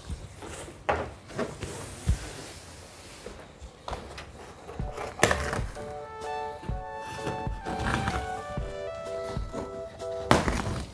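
A large cardboard box is torn open and pulled down by hand, with knocks, thuds and the noise of cardboard tearing. Background music with held notes comes in about halfway through and continues under the handling.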